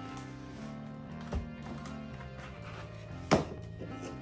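Background music, with two sharp knocks from the mailer and knife being handled on the table, the louder one about three-quarters of the way in.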